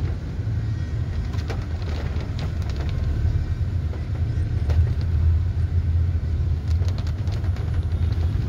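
Car cabin noise while riding in a taxi through rain: a steady low rumble of engine and tyres on a wet road, with scattered light clicks.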